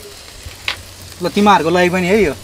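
Faint steady hiss and low hum. About a second in, a person's drawn-out, wavering voice sound without words comes in loudly and carries on.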